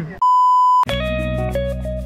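A single steady electronic beep, one flat high tone lasting about two-thirds of a second. Just before a second in, music starts abruptly: a plucked-guitar tune over steady low bass notes.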